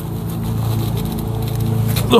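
A steady low mechanical hum, even in pitch, that eases off just after the end.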